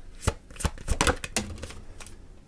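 Tarot cards being handled and laid down: a handful of separate sharp taps and snaps as cards are pulled from the deck.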